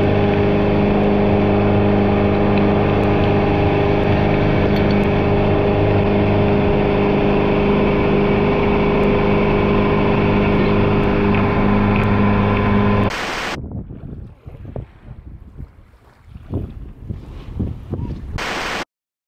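Outboard motor running steadily at speed, a constant hum over the rush of the boat's wake and wind. About thirteen seconds in it cuts off abruptly, giving way to a much quieter, uneven noise.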